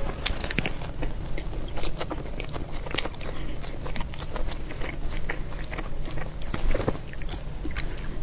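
Close-miked eating: a woman bites into a golden pastry roll and chews, with many quick, irregular mouth clicks and crackles.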